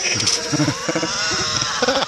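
Loud, wavering bleating.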